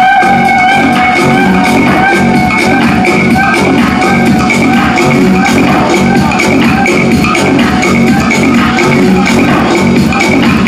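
Loud dance music with a steady beat, playing over a sound system.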